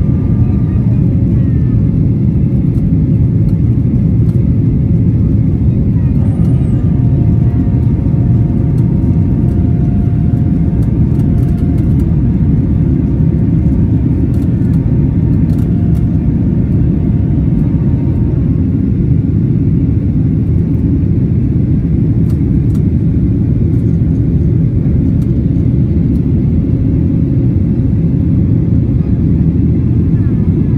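Jet engine and airflow noise inside the cabin of a Thai Lion Air Boeing 737 climbing after takeoff: a loud, steady low roar, with faint engine whine tones above it that change pitch about six seconds in and fade away after about eighteen seconds.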